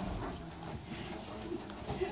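A dog walking across a hard floor, with a few faint clicks of its claws.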